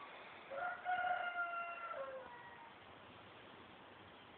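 A rooster crowing once, about half a second in: one long call of about a second and a half that drops in pitch at the end, over faint background hiss.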